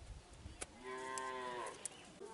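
A cow mooing once, a single steady call of just under a second that drops in pitch as it ends, starting a little under a second in. A few sharp clicks sound around it.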